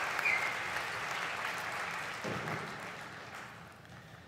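Audience applause that cuts in abruptly and fades over the last second or two.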